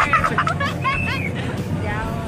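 Several people's voices talking and calling out over a steady low rumble, the drone of the boat's engine.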